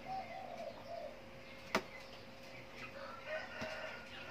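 Birds calling in the background: short low calls near the start and again after about three seconds, with some higher chirps near the end. A single sharp click about a second and three quarters in is the loudest sound.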